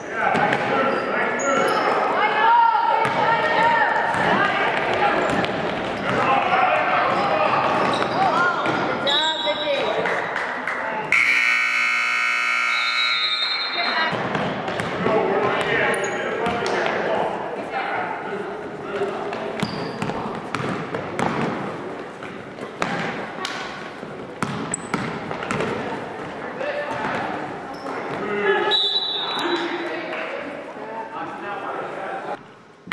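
Basketball bouncing on a hardwood gym floor during play, under spectators' and players' voices echoing in the gym. About eleven seconds in, a scoreboard buzzer sounds for about three seconds.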